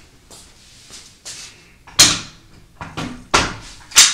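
Strong SewTites quilting magnets snapping into place on the longarm quilting frame: a series of sharp clacks, the loudest about two seconds in, another just after three seconds and a last one at the end.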